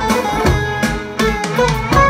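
A recorded Turkish folk-style track played back over studio monitors: a plucked electric bağlama (saz) playing a melody over percussion, with regular drum strikes.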